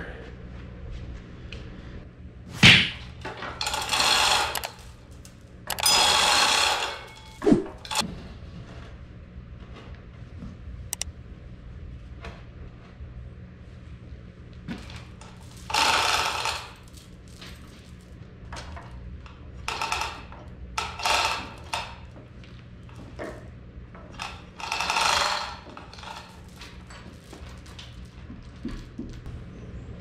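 Manual chain hoist being worked in spells, its chain links rattling through the hoist as a tractor transmission is lowered onto a wooden stand, with a single thunk about three seconds in.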